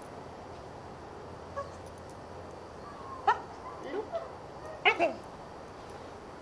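A young white dog giving a few short, sharp yips and barks, with a whiny fall in pitch on some, bunched in the second half with the loudest a little past three and just before five seconds in.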